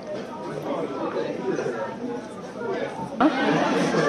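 Indistinct chatter of several people talking, none of it clear speech, growing louder. Louder voices break in abruptly a little after three seconds.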